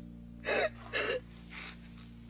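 Crying in three sharp, catching gasps about half a second apart, the last one fainter, over soft background music holding a sustained chord.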